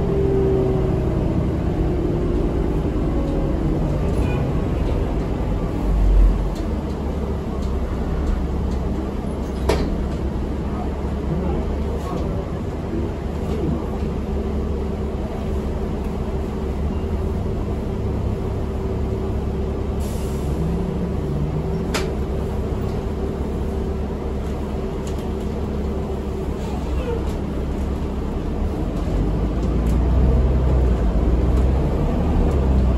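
Interior of a New Flyer D40LF city bus: a steady low rumble from the engine and running gear, with a few sharp knocks and rattles from the body and fittings, the loudest about six seconds in.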